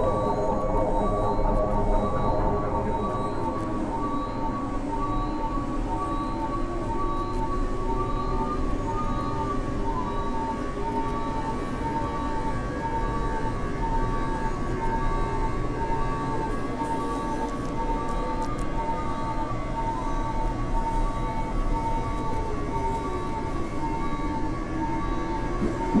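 Layered synthesizer drones: two high tones pulsing on and off in a steady dashed pattern over a dense low rumble, with slow sliding pitches that dip and rise again in a siren-like way.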